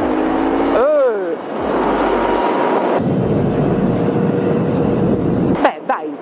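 Royal Enfield Interceptor 650's 650cc parallel-twin engine pulling strongly in third gear through its peak-torque range, under loud wind rush on the rider's microphone. The level dips briefly about a second in.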